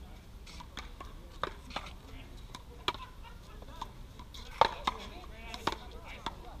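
One-wall paddleball rally: sharp, irregularly spaced knocks of paddles hitting the rubber ball and the ball striking the wall, the loudest a little past halfway.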